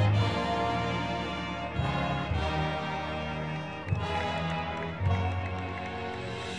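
Marching band playing: winds hold full sustained chords over strong low brass notes, with new accented chords about two, four and five seconds in.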